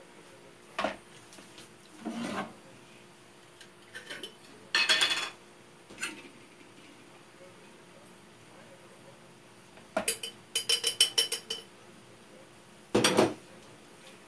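Kitchen utensils and containers being handled: scattered knocks and clinks. About ten seconds in there is a quick burst of ringing metallic rattles, and a louder knock follows near the end.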